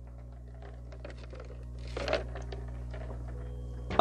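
A steady low electrical hum through the microphone, with faint rustles and a soft knock of movement that swell about two seconds in.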